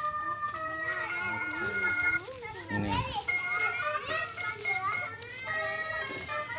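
An ice cream cart's electronic jingle plays a simple tune of held beeping notes that step from pitch to pitch, with children's voices chattering over it.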